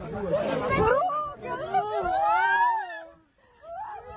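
A muffled rustling burst with overlapping voices, then a long wavering cry: a person weeping aloud, the voice rising and falling for over a second before it breaks off.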